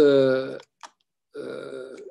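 A man's voice: a drawn-out, held syllable trailing off in the first half second, a short click, then a quieter held hesitation sound in the second half, over a video-call line.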